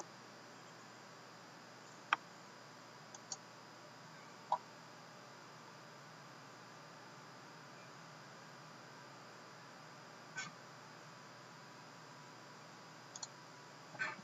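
A few sparse clicks of a computer mouse, falling singly and once as a quick pair, over a faint steady room hiss.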